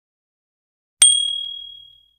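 A single bright bell ding sound effect, the notification-bell chime, struck about a second in and ringing away over about a second.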